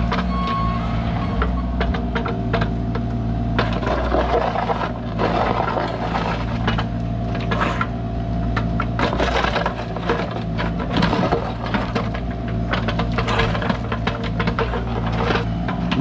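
Bobcat E35 mini excavator's diesel engine running steadily under hydraulic load while the bucket scrapes and digs gravel and dirt, with repeated knocks and clatter of stones. One beep of the machine's travel alarm sounds at the very start.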